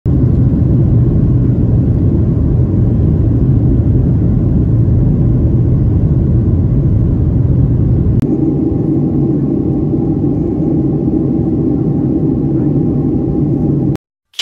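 Jet airliner cabin noise from a window seat during takeoff: a loud, deep rumble, then, after a sudden break about eight seconds in, a lighter steady engine drone with a steady whine over it.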